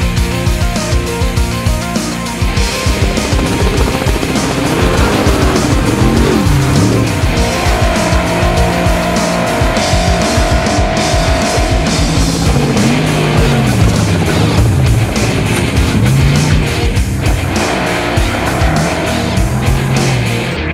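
Trophy truck engine revving up and down hard at racing speed, its pitch rising and falling again and again from a few seconds in, under a heavy rock music soundtrack.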